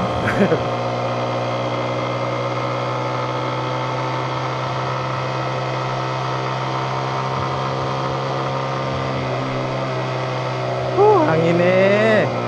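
Motorcycle engine running at a steady, unchanging speed, typical of idling or creeping in stopped traffic, with a brief voice at the start and again near the end.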